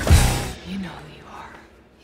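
Film trailer soundtrack: a sudden loud hit just after the start that dies away over about half a second, followed by soft, whispered speech fading low.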